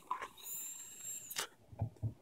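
A puff on an e-cigarette: air drawn through a Kayfun rebuildable atomizer on a mechanical tube mod makes a thin, steady, high whistle with a faint hiss for about a second. A couple of soft short sounds follow near the end.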